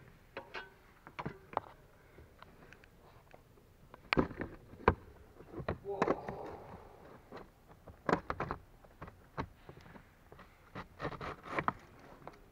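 Plastic clicks, knocks and scraping as a car's cabin air filter housing cover is unlatched and the filter slid out of the heater box behind the glovebox, with a longer rustling scrape about six seconds in.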